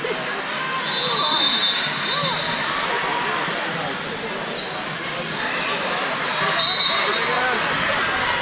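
Chatter of many voices echoing through a large sports hall, with a ball bouncing on the hard court floor. Short high steady tones sound about a second in and again near the end.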